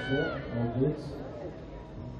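Several voices calling and shouting over one another, with a high, drawn-out call right at the start.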